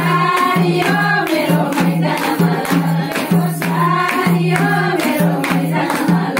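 Group of women singing a Teej folk song together, clapping along, with a madal hand drum keeping a steady beat of about two strokes a second.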